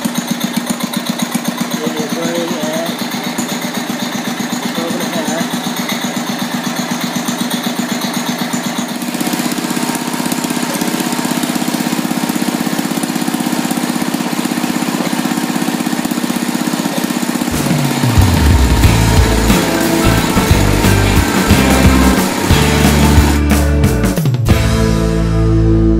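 Cub Cadet garden tractor's Kohler single-cylinder engine running steadily, with a rapid even firing beat that blurs into a steadier sound about a third of the way in. Music with a heavy bass comes in over it about three-quarters of the way through.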